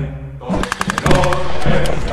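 A machine gun firing one rapid burst of about a second, roughly a dozen shots a second, starting about half a second in, with a few single shots after it.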